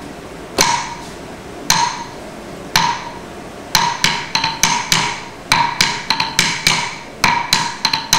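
Wooden stick (thattukazhi) striking a wooden block (thattu palagai) to keep time for a Bharatanatyam dancer. There are four slow, evenly spaced strokes about a second apart, then from about halfway a quicker, uneven run of strokes. Each stroke is a sharp, ringing knock.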